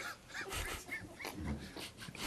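Faint laughter and off-mic voices: short, irregular bursts of sound.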